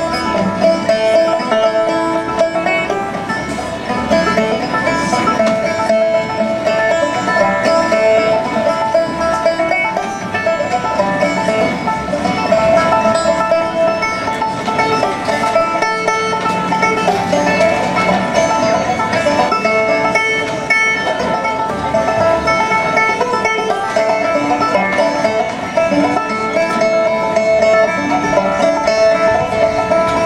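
Solo banjo playing a steady old-time tune, with ringing plucked notes and a repeating drone string throughout.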